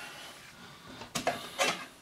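Brief handling noises from objects being moved off camera: a low rustle, then a couple of short knocks and clicks from about a second in.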